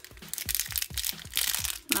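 A thin plastic blind bag crinkling and crackling as it is handled and pulled out of its plastic toy backpack: a rapid, irregular run of crackles.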